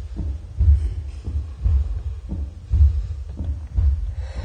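Slow, deep heartbeat sound, about one beat a second, four beats in all.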